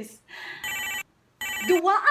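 Electronic telephone ringtone sounding twice, each ring about half a second of steady stacked tones, with a brief dead-silent gap between.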